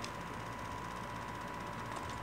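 Quiet, steady background hiss with a faint, steady high hum running throughout: room tone, with no distinct sound events.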